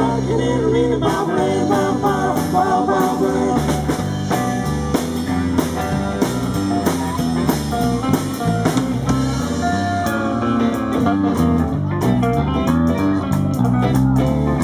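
Live rock'n'roll band playing: electric bass in a stepping line, hollow-body electric guitars and a drum kit, with some singing.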